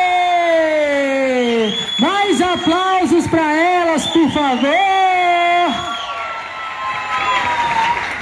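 A voice calling out a string of long, drawn-out cheers whose pitch rises and falls, with a crowd cheering behind it; the calls grow quieter in the last couple of seconds.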